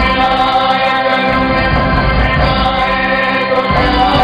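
Male vocalist singing a Hindi film song over a live stage orchestra, with notes held long.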